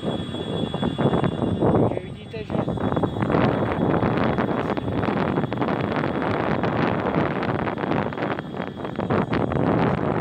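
Wind buffeting the microphone and tyre rumble on asphalt as an electric kick scooter with a front hub motor rides along at speed. The noise dips briefly about two seconds in.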